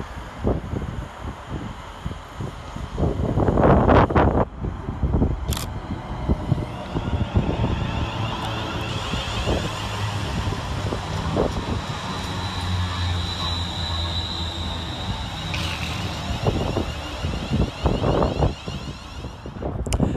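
West Midlands Railway Class 350 Desiro electric multiple unit arriving and running past along the platform: wheels rolling on the rails, with a steady high whine from the traction equipment as it goes by. A brief loud rush comes about four seconds in.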